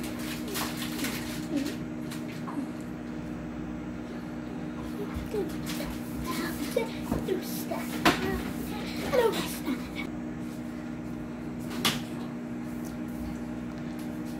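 Panasonic microwave oven running with a steady hum while microwave popcorn heats. A few isolated sharp pops of the first kernels are scattered through it, the loudest two in the second half, just before the popping takes off.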